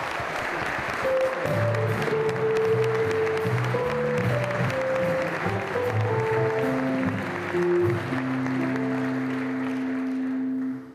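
Audience applauding over live instrumental music with a cello. The music enters about a second in, plays a slow melody over low bass notes, and ends on a long held low note.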